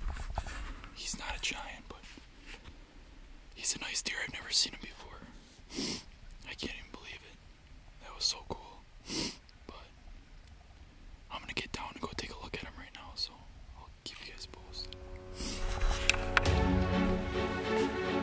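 A man whispering in short breathy bursts close to the microphone. Music fades in with held tones in the last few seconds.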